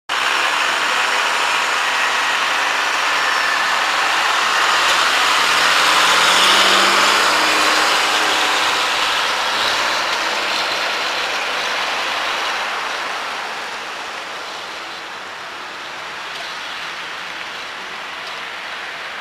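Road traffic noise: a vehicle passing with tyre and engine noise, swelling to a peak about six seconds in and fading away after about twelve seconds.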